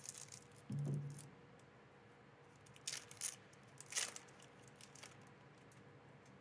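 Foil booster-pack wrapper being cut open with scissors and handled, giving a few short crinkles and crackles, mostly about three and four seconds in.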